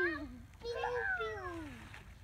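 A young child's wordless, whiny vocal sounds: a short call that drops in pitch, then a longer drawn-out one that slides steadily down.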